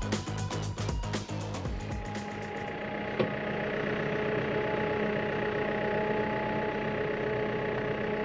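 Background music with a steady beat for about the first two seconds, then a tractor engine running steadily, heard from inside the cab, with one short knock about three seconds in.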